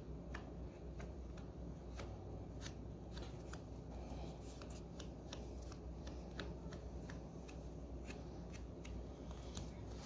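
Faint, irregular small clicks and rubbing from fingers handling and pressing a small cut piece of baseboard into place against the baseboard end, over a low steady hum.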